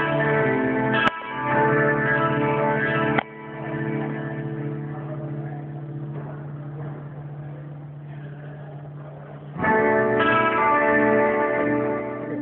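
Amplified electric guitar playing loud held chords, broken by a sharp click about a second in. It cuts off abruptly near three seconds, leaving a quieter held tone that slowly fades, and loud chords come back in near the end.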